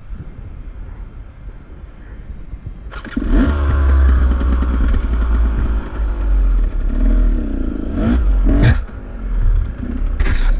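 Enduro dirt bike engine running low for about three seconds, then revved hard on a rocky hill climb, its pitch rising and falling with the throttle. A couple of sharp knocks come near the end.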